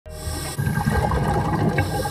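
A loud rush of bubbling water, like a burst of air bubbles churning underwater, starting about half a second in.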